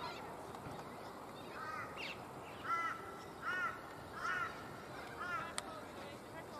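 A bird calling repeatedly from the trees: about five short, harsh calls, roughly one every second, over steady outdoor background noise. A single sharp click comes near the end.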